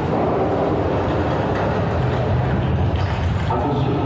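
Roller coaster pre-show soundtrack: a steady low rumble with a voice speaking through it, the voice growing clearer near the end.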